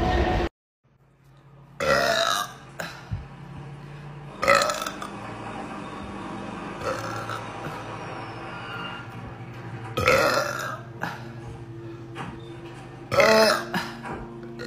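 A woman burping out loud four times: about two seconds in, at four and a half seconds, around ten seconds and again near the end. Each burp is short, under a second, with a pitch that wavers.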